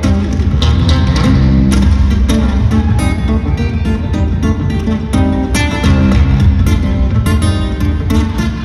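Solo fingerstyle acoustic guitar played live through an arena PA, in an instrumental passage with no singing. Picked bass notes and chords are punctuated by regular percussive slaps on the strings.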